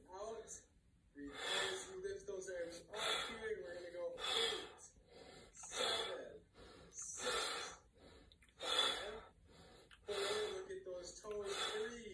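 A man breathing hard and noisily through an arm workout, with loud voiced gasps about every one and a half seconds, eight in all.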